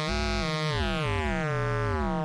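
Analog synthesizer oscillator under audio-rate exponential frequency modulation: a steady tone with many overtones whose sidebands glide up and down as the modulation amount is changed, shifting both the timbre and the pitch.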